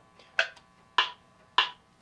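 Peterson StroboPlus metronome clicking at 100 beats a minute: three sharp clicks about 0.6 s apart.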